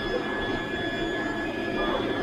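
A bank of 22 Anet 3D printers running at once: a steady whir of cooling fans and stepper motors, with several thin, steady high tones on top.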